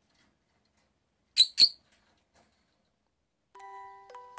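Two short, sharp, high-pitched chirps from a blue masked lovebird, about a quarter second apart. Light mallet-percussion background music begins near the end.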